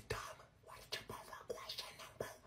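A person whispering words in several short, hushed, breathy bursts.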